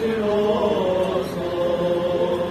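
Orthodox liturgical chant: voices singing together in slow, long held notes that move up and down in small steps.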